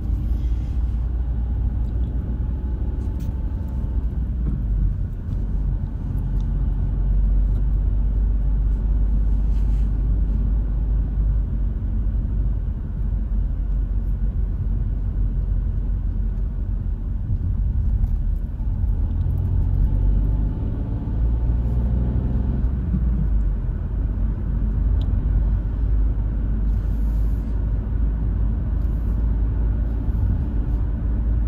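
Car driving on a road, heard from inside: a steady low rumble of engine and tyres. The engine note rises briefly as the car speeds up near the start and again about two-thirds of the way through.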